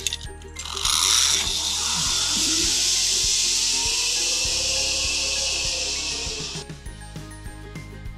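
Zipline trolley pulleys running along the steel cable, a loud steady high whir that starts about a second in and cuts off sharply about a second before the end. Background music with a steady beat plays underneath.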